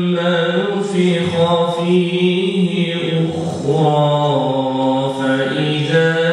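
A man reciting the Quran in a slow, melodic chant into a microphone, holding long notes that waver and step in pitch, with brief breaths between phrases.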